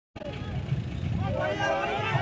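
A split-second dropout at the start, then indistinct voices of men talking in the open over steady low background noise, the voices clearer near the end.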